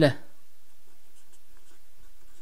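A felt-tip marker scratching faintly on paper as a short line is drawn.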